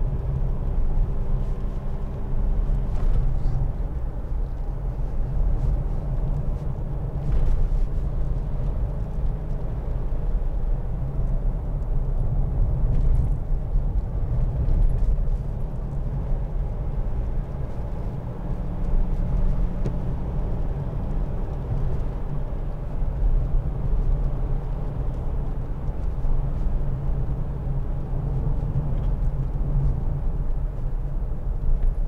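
Mitsubishi L200's 2.5-litre four-cylinder turbodiesel pulling the pickup along at road speed, heard from inside the cab as a steady low drone mixed with tyre and road rumble.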